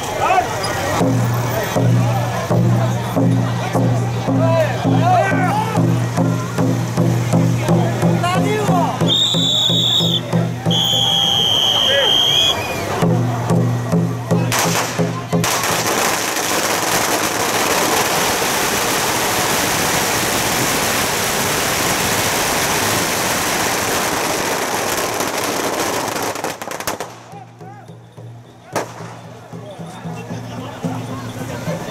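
A long string of firecrackers going off in a continuous dense crackle for about ten seconds from about halfway through, thinning out near the end. Before it there is rhythmic music with a low beat and crowd voices, with two long high tones about ten seconds in.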